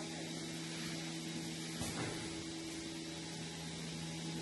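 Steady mechanical hum and hiss of milking parlor machinery, with a light knock about two seconds in.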